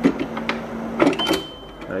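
Dehumidifier's steady low hum cutting off about a second in as its plastic water-tank drawer is pulled out with several sharp clicks; a steady high electronic beep then starts and sounds on and off.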